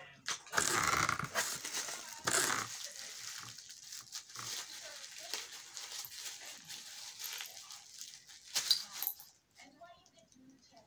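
Tissue paper rustling and crinkling as a small tissue-wrapped gift is handled and unwrapped, loudest in the first few seconds, with a short louder sound a little before the end.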